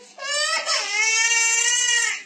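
A baby crying: one long, high-pitched wail of about two seconds, which begins just after a brief break from the previous cry.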